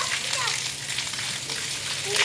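Steady hiss of rain falling, with a child's brief call just after the start.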